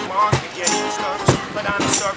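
Two steel-string acoustic guitars strummed hard in a driving rhythm, with sharp percussive strokes, under a man's vocal.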